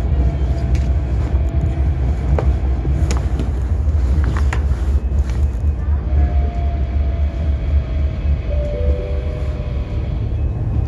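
Ride noise inside a GT6NU low-floor tram running along the track: a steady low rumble with scattered clicks and knocks. From about six seconds in, a faint whine sinks slightly in pitch.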